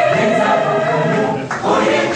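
Mixed choir of women and men singing together without words that a listener can pick out: one phrase is held, and a new one starts near the end.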